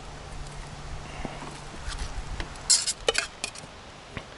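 Metal spoon scraping rice out of a metal camping pot and knocking against stainless steel bowls, with a quick run of sharp clinks a little before the end.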